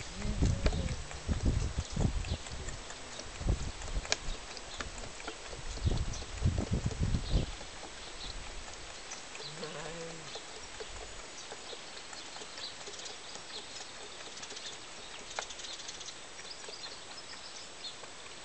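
A lamb sucking at a hand-held feeding bottle, with loud irregular low rumbling bursts through the first half. After that it goes quieter, with a short low pitched sound about ten seconds in and faint high chirps near the end.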